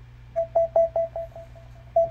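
ELEGIANT Bluetooth computer speaker playing a rapid run of identical mid-pitched beeps, about five a second, fading as they go: the tone it gives on being switched into Bluetooth pairing mode.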